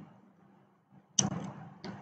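About a second of near silence, then a soft breath-like sound that starts suddenly and fades over about half a second, and a faint short click-like noise near the end.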